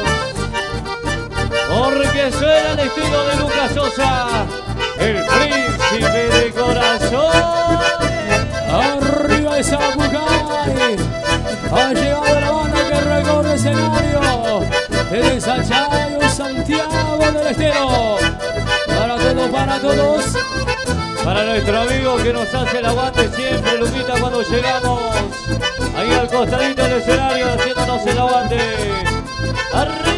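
Chamamé band playing with the accordion carrying the melody over a steady dance beat.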